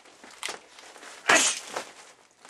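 A gloved hook punch lands on a padded grappling dummy with one sharp, heavy hit about a second and a half in, after a faint tap about half a second in.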